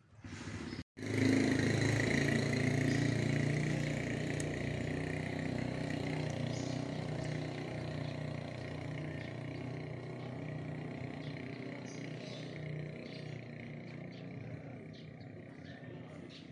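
A motor engine running steadily. It starts abruptly after a brief dropout about a second in, then slowly fades.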